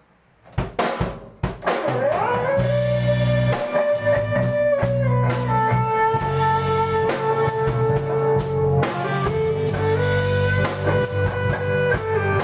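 A band with drums, bass and guitar starting a song: a few scattered drum hits, then the full band comes in about two seconds in, with a lead line sliding up into a long held note that moves to a new pitch a few seconds later.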